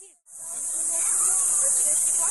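Steady, loud high-pitched insect drone. It dips out briefly at a splice in the audio just after the start and fades back in within about half a second.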